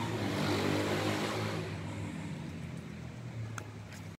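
A motor vehicle's engine running nearby, a low steady drone that slowly fades away, with one light click near the end.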